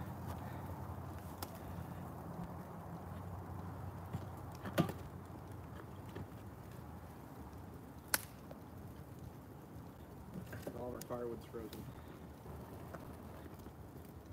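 Wood and brush fire burning in a steel drum burn barrel: a low steady rumble with a few sharp cracks, the loudest about five and eight seconds in.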